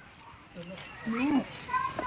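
A child's voice making short wordless vocal sounds, rising and falling in pitch, starting about half a second in after a quiet moment.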